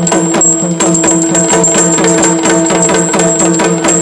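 Yakshagana instrumental accompaniment: a maddale barrel drum struck in a fast, even rhythm over a sustained drone.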